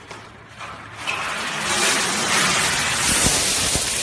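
A large load of pennies poured out onto a counter: a continuous rattling cascade of coins that starts about a second in and keeps going, with a few heavier knocks partway through.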